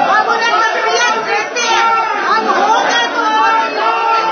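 A crowd of many voices talking over one another at once, a continuous loud hubbub of a commotion among the audience.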